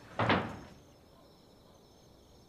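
Wooden lattice double doors banging shut once, a loud, sudden knock about a quarter of a second in, with a short ringing tail.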